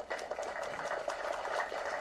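Steady hiss of background room noise, with no speech or distinct events.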